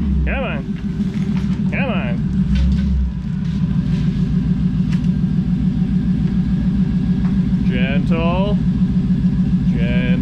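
LS-swapped V8 in a 1957 Chevy Bel Air idling as the car rolls in at low speed. The rumble is heavier for the first three seconds, then settles into a steady, pulsing idle.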